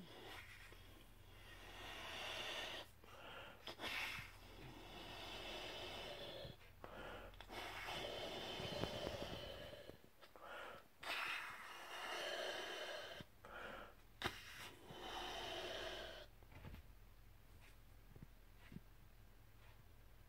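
Breaths blown into a soft silicone hippo balloon: about five long, forceful blows of rushing air, each lasting a couple of seconds, with short pauses between them for breath. The blowing stops about 16 seconds in.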